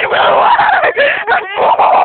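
Girls laughing and shrieking loudly, several voices at once, with no clear words.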